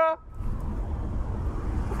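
Steady low rumble of street traffic on a city road.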